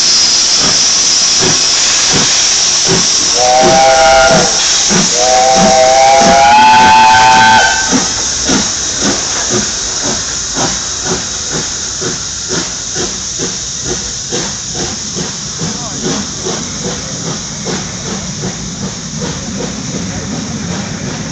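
BR Standard Class 7 'Britannia' steam locomotive starting away: steam hissing, two blasts on the whistle a few seconds in, the second longer, then its exhaust chuffing faster and faster as it gathers speed.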